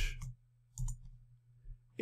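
Computer keyboard keystrokes: one sharp click about a second in and a fainter one near the end, over a low steady hum.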